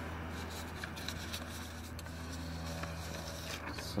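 A steady low hum with a few faint clicks and light handling noise.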